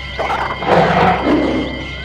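A lion's roar, added as a sound effect: one rough roar of about a second and a half that fades away near the end.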